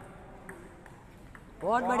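Table tennis ball clicking against bats and table in a rally, a few light ticks about half a second apart. Near the end a man shouts loudly, "badhiya" (well done).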